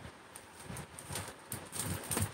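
A few soft, irregular clicks and light knocks, like small objects being handled on a tabletop.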